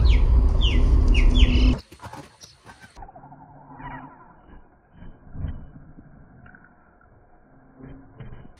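A bird giving short, quickly falling chirps, several in the first two seconds, over a loud low rumble that cuts off suddenly about two seconds in. After that only faint scattered sounds remain.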